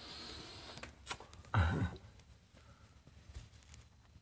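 Handling noise of a handheld phone recording: a breathy rustle for under a second, a sharp click, then a brief low murmur-like voice sound, followed by faint scattered clicks.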